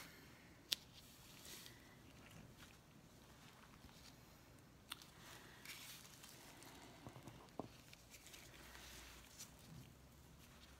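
Near silence: room tone, broken by a faint sharp click about a second in, another around five seconds, and a few soft small handling noises later on.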